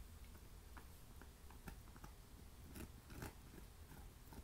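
Belgian Malinois gnawing on a meaty bone: faint, scattered crunches and clicks of teeth on bone, a little stronger about three seconds in.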